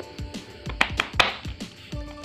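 Soft background music, with a few sharp plastic clicks about a second in from handling the LED bulb as its diffuser dome is pressed back on.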